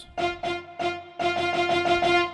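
Sampled solo violin from the VSCO 2 Community Edition 'VSCO2 Violin' patch, arco with vibrato: a couple of short bowed notes, then one note held from just after halfway through.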